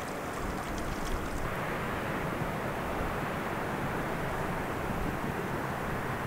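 Steady rushing of wind across open ground, an even hiss with no distinct events.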